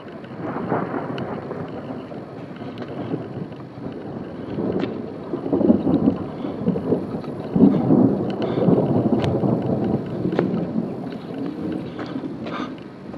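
Long rolling thunder rumble, swelling soon after the start and loudest in two surges around the middle, with a few sharp ticks on top.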